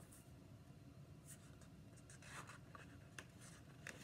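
Faint rustling and a few light ticks of a hardcover picture book's paper page being handled and turned, with quiet room tone between.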